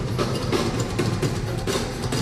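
Live rock band music, led by a drum kit and congas playing a busy, steady rhythm over a low bass line.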